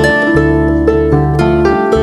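Live instrumental folk music led by a lever harp plucking a quick run of notes over sustained low bass notes.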